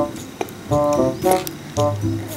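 Background music: a light keyboard tune of short repeated notes over a bass line, the same phrase coming round twice.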